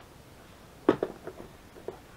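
A sharp click about a second in, then a few lighter ticks: a plastic storage organizer box being grabbed and moved by its handle.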